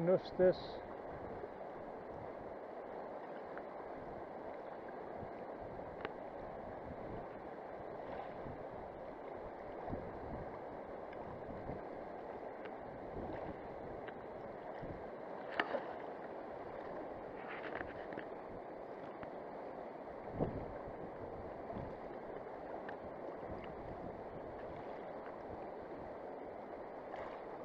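Steady rushing of a fast river current flowing past the bank, with a few faint clicks and one short knock about two-thirds of the way through.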